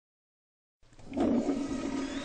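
Toilet flushing: a rushing of water that starts a little under a second in, out of silence, and quickly grows loud.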